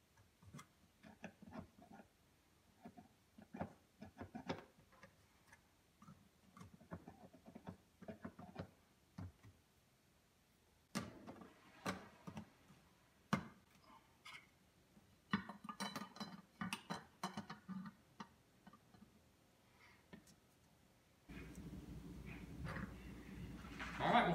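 Faint, irregular clicks and taps of plastic parts and a screwdriver as a dishwasher's steam vent assembly is pressed back into place on its stainless panel and its cover screwed down. Near the end a steady low hum comes in.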